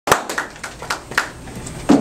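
A small group clapping, heard as scattered separate hand claps rather than a dense roar, the first the loudest and the rest thinning out.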